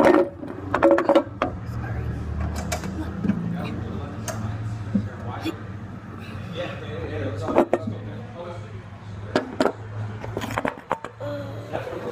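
Irregular knocks and bumps of a phone being handled one-handed while someone climbs a ladder, with a steady low hum underneath.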